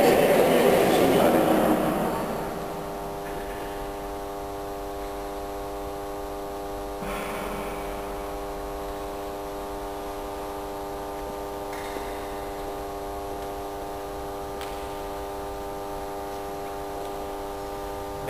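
A steady hum of several held tones, unchanging in pitch and level, takes over about two seconds in as voices die away.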